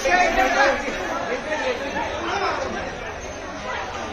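Several people's voices talking and calling out over one another, loudest in the first second.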